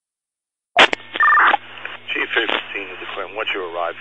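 Fire-department radio channel keying up out of silence: a sharp click, then a brief two-tone electronic chirp, followed by a dispatcher's or firefighter's voice over the radio with a steady hum underneath.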